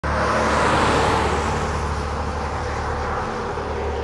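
Pickup truck passing close by and driving away down the road, its engine and tyre noise easing off gradually.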